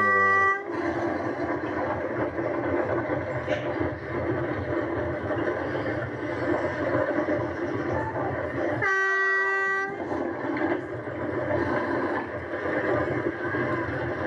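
Steady rumble of a wooden carrilana gravity kart's wheels on asphalt and the wind rushing past as it runs downhill at speed, heard through a TV's speaker. A horn-like steady tone sounds for about a second, nine seconds in.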